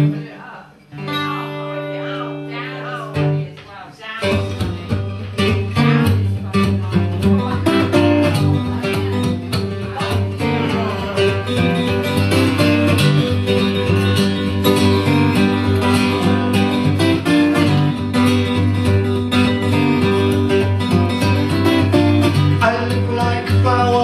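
Acoustic guitar playing a song's instrumental introduction. It opens with a few held, ringing chords, then a steady, busy rhythmic pattern starts about four seconds in.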